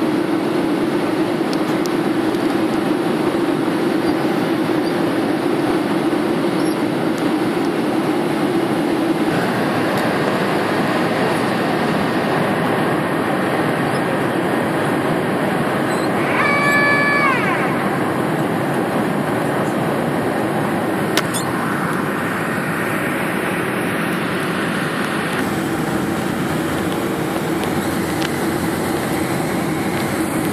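Cabin noise aboard a Boeing 737-300 on its descent: the steady roar of the CFM56-3 engines and the airflow, with a hum that fades out and later returns. About halfway through, a whine rises for about a second.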